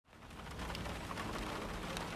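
Rain falling steadily on a car's roof and windshield, heard from inside the car, fading in from silence.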